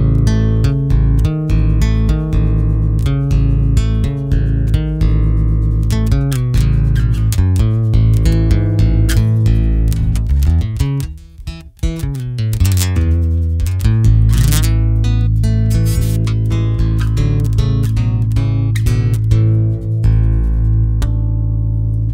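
Epiphone El Capitan J-200 electro-acoustic bass with bronze strings, played fingerstyle through its Fishman pickup with the tone control partly rolled off. A run of plucked bass notes, a brief drop about eleven seconds in, then longer held notes from about fourteen seconds in.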